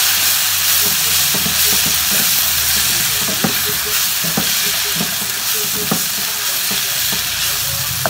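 Onion-tomato masala sizzling in a wok over a gas flame as a spatula stirs and scrapes it. Several sharp clicks of the spatula against the pan come in the second half.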